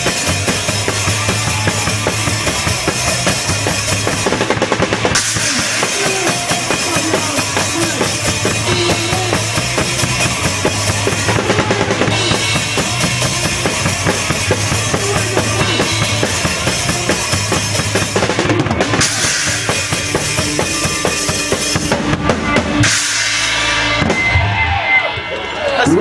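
Punk band playing live: a drum kit pounding with bass drum and snare under electric guitar, loud and continuous, dropping away near the end.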